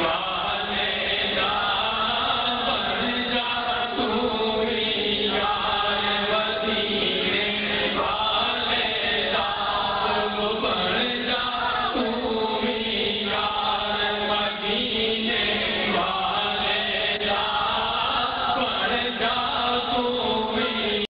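A man's voice chanting a melodic recitation into a microphone, the sung lines long and unbroken, over a steady low hum.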